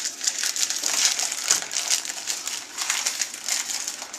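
Plastic wrapper of a packet of Jammie Dodger biscuits crinkling and crackling as it is opened and handled, in an irregular run of fine crackles.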